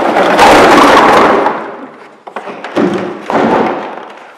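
About 50 empty plastic PET drink bottles poured out of a plastic tote into the hopper of a container-counting machine: a loud, dense clatter of hollow plastic knocking together and against the hopper that fades after a second or so, followed by a shorter clatter about three seconds in.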